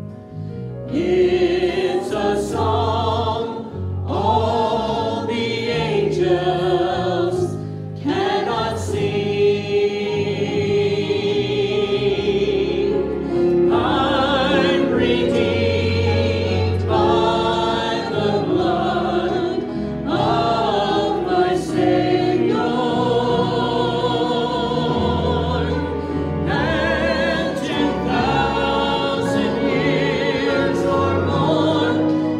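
Church choir singing a gospel hymn with instrumental accompaniment, in sung phrases over sustained low notes.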